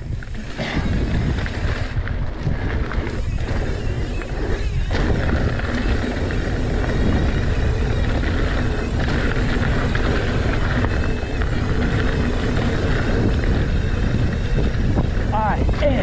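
Wind rushing over the mountain bike rider's camera microphone as the bike descends, mixed with the rumble of knobby tyres rolling over dirt and rock.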